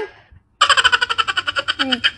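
A young child giggling in a high-pitched, rapid run of short pulses that starts about half a second in and lasts about a second and a half, trailing off into a falling voice near the end.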